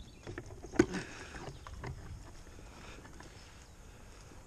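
Thin twigs and branches rustling and knocking close to the helmet microphone, with one sharp snap just under a second in.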